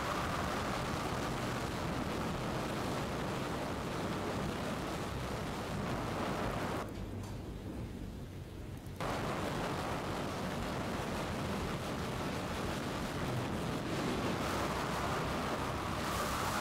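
Steady rushing roar of tornado winds on storm footage, played over loudspeakers in a lecture hall. For about two seconds in the middle it drops and loses its hiss, then comes back.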